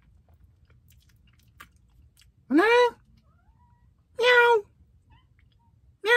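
Domestic cat meowing twice, two loud calls of about half a second each that rise and then fall in pitch: a hungry cat asking for food.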